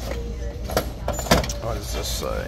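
Store ambience: a steady low rumble with a few sharp knocks and clatter, the loudest a little past halfway, and voices in the background.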